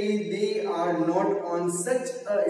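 A man's voice in long, drawn-out syllables, almost sing-song, rather than clear words.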